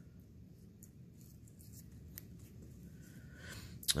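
Faint snips of small scissors cutting fatty tissue away from a sheep eyeball: a few soft, sharp clicks spread irregularly through, over low room noise.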